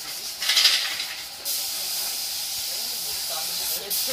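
Compressed-air paint spray gun hissing steadily as paint is sprayed on. A louder burst of spray comes about half a second in and lasts about a second.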